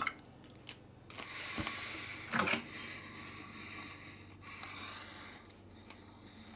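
Thin clear plastic food tray being handled, crinkling, with a few sharp clicks, the loudest about two and a half seconds in.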